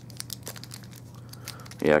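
Clear plastic packaging crinkling and crackling in the fingers in small scattered clicks, as a sealed packet of blood slides is worked at to get it open.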